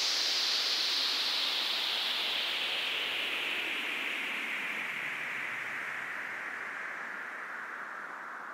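Synthesised white-noise sweep falling slowly and steadily in pitch while fading out: the closing downlifter of an EDM track, with no beat or melody left.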